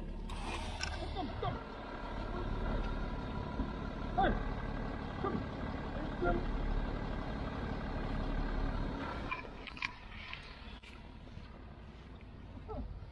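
A vehicle engine idles with a steady hum while the metal hook and line of a winch are unhooked, with occasional clinks. The engine hum drops away about nine seconds in.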